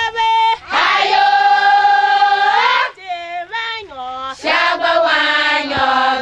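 A group of women singing a chant together, with a long held note in the first half, a few short phrases, then another sustained sung phrase near the end.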